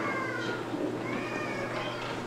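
Worship band starting the intro of the sending song: a held chord under high notes that slide up and fall away, several times.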